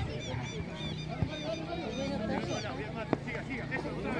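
Children's high-pitched shouts and calls during a youth football match, many short overlapping cries. Two sharp knocks of the ball being kicked sound about two seconds apart.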